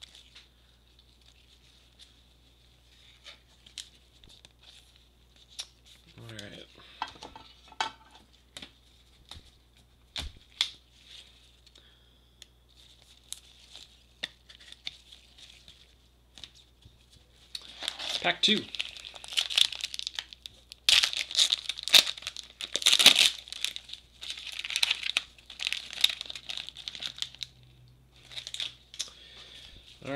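Foil trading-card pack wrapper being torn open and crinkled by gloved hands. Light clicks and rustles of cards being shuffled come first, then a dense stretch of loud crinkling and tearing fills the second half.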